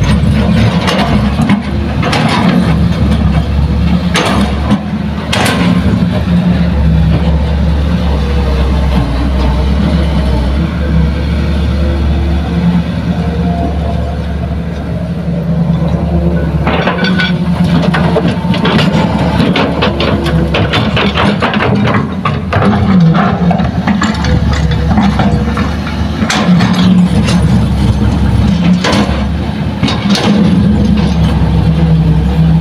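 Hitachi hydraulic excavator's diesel engine running steadily under load, with clattering bursts of soil and rocks tipped from its bucket into a dump truck's steel bed during the first few seconds and again through much of the second half.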